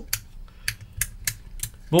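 Miniature toggle switches on a homemade MOSFET/transistor current tester being flicked one after another: a quick run of sharp clicks, several a second.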